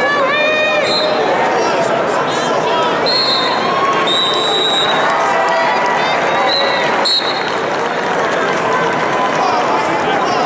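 Crowd din in a large indoor arena: many voices talking and shouting at once, with several short, high whistle blasts from referees on the surrounding wrestling mats.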